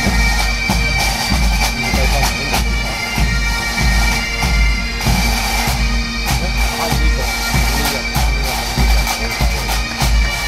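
Massed Highland bagpipes and drums playing: the pipes' steady drones hold under the chanter melody while the drums beat regular strokes, with heavy low-end boom from the bass drums.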